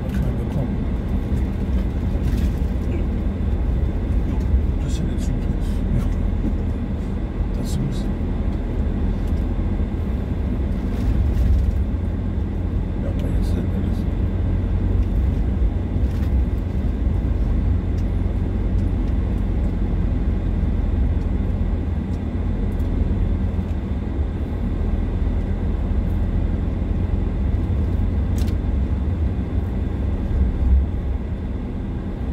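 Car driving slowly on a dirt road, heard from inside the cabin: a steady low rumble of engine and tyres, with a few light clicks or rattles here and there.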